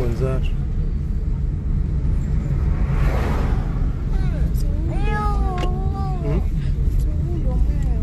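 Steady low rumble of a car cabin while driving. Near the middle a child lets out a drawn-out, wavering whine lasting about a second, after a brief rushing noise.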